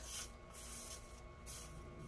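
Hot soldering-iron tip wiped on the cleaning sponge of its stand, hissing faintly in two short bursts, one at the start and another around the middle. The tip is being cleaned because it is oxidizing.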